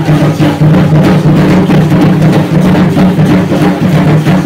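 Loud, continuous drumming for an Aztec-style ceremonial dance, with the clatter of many strikes and rattles in a steady beat.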